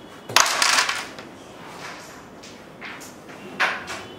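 Carrom break shot: the striker cracks into the packed centre carrom men about a third of a second in, and the men clatter as they scatter across the board for about half a second. A few lighter clicks follow as pieces knock the frame and each other, with one louder clack near the end.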